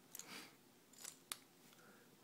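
Faint metallic clicks and scraping as an atomizer head is screwed onto the threaded connector of an Innokin iTaste VV e-cigarette battery, with one sharper click about a second and a quarter in.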